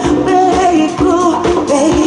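Live band playing a cumbia with a sung lead vocal over congas, drum kit and keyboard, and a steady beat of percussion hits.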